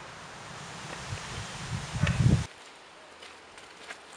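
Outdoor rustling with a steady hiss and a few soft thumps about two seconds in, which cuts off abruptly about halfway through.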